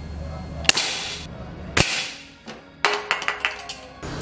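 Sharp Fusion 2565 multi-pump air rifle, charged with seven pumps, fires once about 0.7 s in: a sharp crack with a short hiss of released air. A second sharp crack comes about a second later, then a few light clicks near the end.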